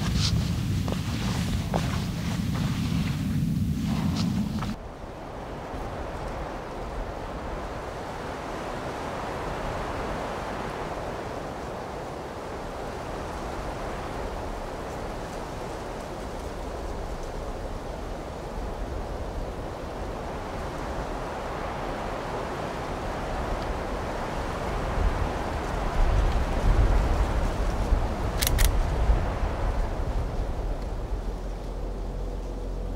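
Wind blowing steadily, rumbling on the microphone for the first few seconds and again in gusts near the end.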